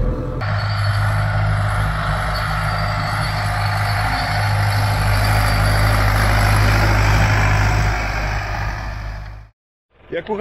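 Torpedo tractor's diesel engine running steadily under load as it pulls a land roller across the field, with a strong low hum. The sound fades out near the end.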